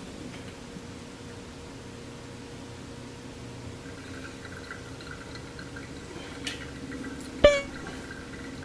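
Hot water poured in a thin stream from a gooseneck kettle onto coffee grounds in a paper-filtered pour-over dripper, steady from about four seconds in. A brief, loud pitched sound comes near the end.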